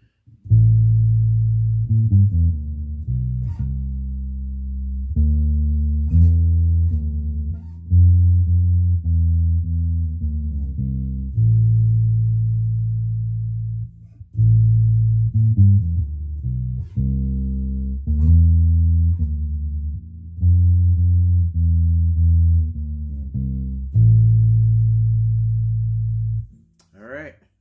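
Electric bass played through a Fender amplifier: a low riff of plucked notes, played through twice, each time ending on a long held note.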